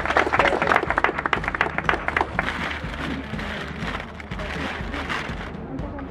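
A small crowd applauding; the clapping thins out and dies away about halfway through.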